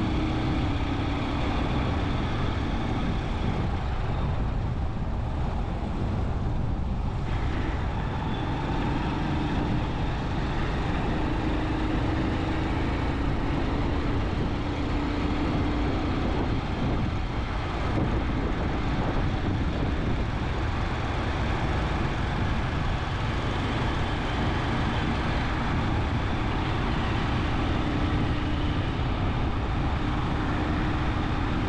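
A vehicle driving on a paved road: steady road and wind noise with a low engine hum that dips slightly in pitch partway through and climbs again near the end.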